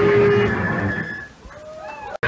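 A heavy band's song ending: amplified electric guitar notes and feedback tones ring on and fade out over about a second and a half. Near the end come a few short wavering squeals that glide up and down in pitch.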